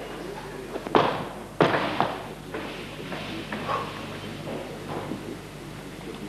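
Loaded barbell coming down onto the floor: two heavy thuds about two-thirds of a second apart, about a second in, each with a short rattling tail.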